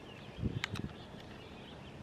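Faint birdsong chirping in the background, with a single light click and some low handling noise from the folding axe multitool about half a second in.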